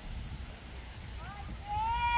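A steady low rumble, then a high voice calling out near the end.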